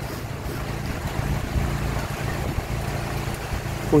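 Strong gusty storm wind blowing through birch trees, with a steady low rumble of wind buffeting the microphone.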